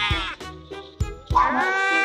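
Very young kitten mewling in distress while being pulled free from a hole it is stuck in: one long arching cry fades out just after the start, and another begins about 1.3 seconds in. Background music with a beat runs underneath.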